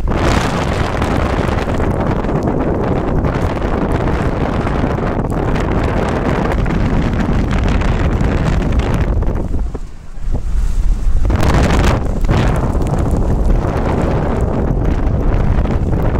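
Wind buffeting the phone's microphone, a loud rumbling rush that drops away briefly about ten seconds in and then returns.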